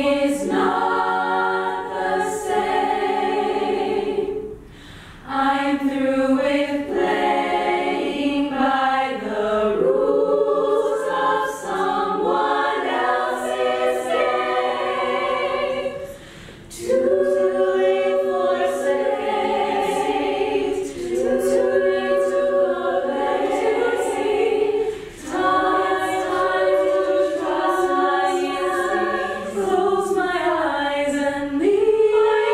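Women's a cappella choir singing sustained chords in harmony, phrase after phrase, with short breaks for breath about four, sixteen and twenty-five seconds in.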